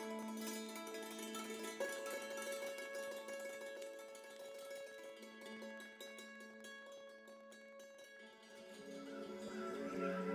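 Hammered dulcimer played softly with hammers, its struck strings left ringing over one another. The notes thin out and get quieter past the middle, then build again near the end.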